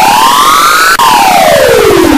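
Electronically distorted logo sound effect: a loud synthetic tone with overtones whose pitch glides up like a siren, drops suddenly about a second in, then glides steadily back down.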